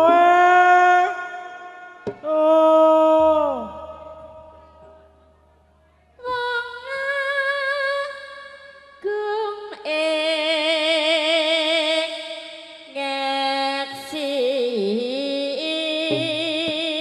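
A Javanese female tayub singer's voice, amplified through a microphone, singing long held notes with a wide vibrato. A first phrase slides down in pitch and dies away. After a pause of about two seconds, she starts a new phrase about six seconds in.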